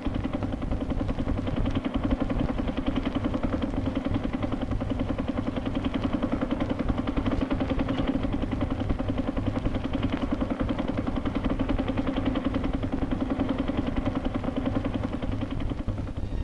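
A motor engine running steadily with a fast, even pulse, unchanging throughout.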